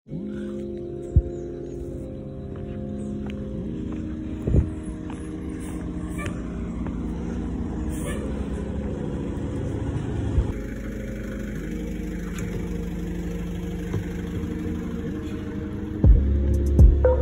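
Bus engine running with a steady low drone that shifts in pitch a couple of times, with a few short knocks.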